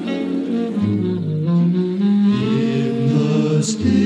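A choir singing slow, sustained harmony, the held chords moving to new ones about every second. A short sibilant hiss comes near the end.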